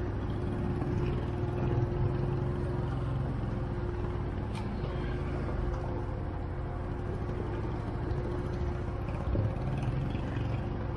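ATV engine running steadily while the quad rides a rough dirt trail, heard from the rider's own machine, with a steady whine over the low engine note.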